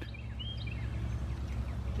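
A few faint bird chirps over a steady low rumble of outdoor background noise.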